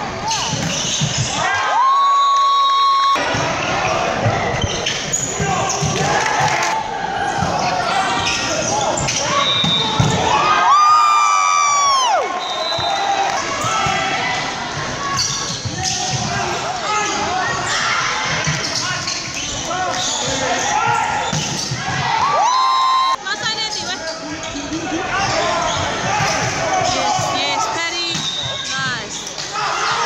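Volleyball rally sounds echoing in a sports hall: balls being struck, players' shoes on the court floor, and players and spectators shouting. Three long, high, steady tones sound about 2, 11 and 23 seconds in.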